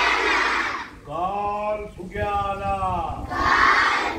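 Call-and-response chant. A crowd of young children shouts a line loudly in unison, then one voice calls out two drawn-out phrases, and the children shout back together near the end.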